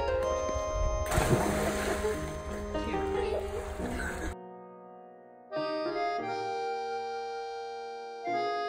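Background music runs throughout. Under it, a child jumps into the sea with a splash about a second in, and the water churns for a few seconds. The outdoor sound cuts off abruptly about four seconds in, leaving only the music.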